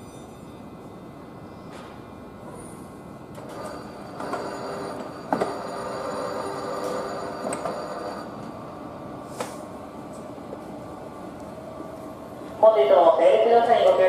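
Electric railway point machine throwing a set of points: a motor whirr of about five seconds starting about three and a half seconds in, with a sharp clack partway through as the switch blades go over. A station public-address announcement starts near the end.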